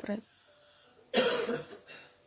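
A woman coughs once, about a second in: a single rough burst of just under a second.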